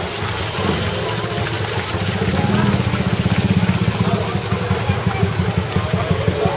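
Crowd voices over a low, rapidly pulsing rumble that grows louder about two seconds in.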